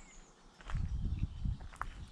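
Irregular low thuds and rumble close to the microphone, starting just under a second in and lasting about a second, with a couple of faint clicks: handling and movement noise as the camera is carried and turned.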